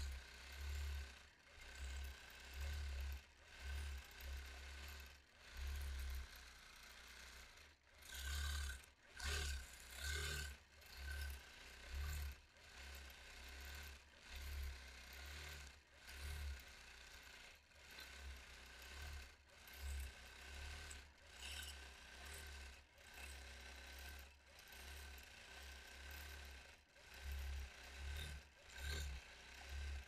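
Longarm quilting machine stitching, its running sound swelling and easing about once a second as the quilter guides it through freehand feathers, with a low hum under a steady high tone.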